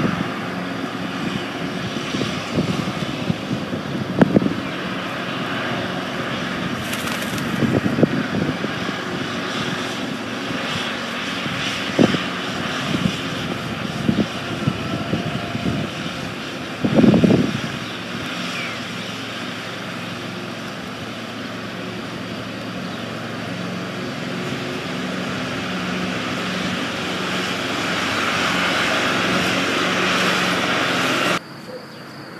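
A steady engine drone from a vehicle or aircraft that grows slightly louder near the end, with several scattered knocks and one longer bump-and-rustle a little past halfway.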